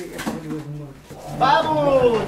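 A person's voice, with a low held note and a louder, falling vocal glide in the second half.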